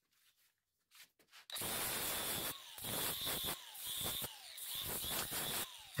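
Angle grinder with an abrasive disc grinding down the end of a metal rod held in a vise, in about four short passes with brief gaps between them. Nothing is heard for the first second and a half.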